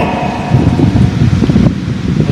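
Low rumbling background noise with no clear tone, dipping slightly near the end.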